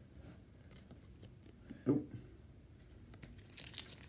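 Faint clicks and rustles of glossy baseball cards being slid and flipped through a stack by hand, with a short louder sound about two seconds in and a brief sliding hiss near the end.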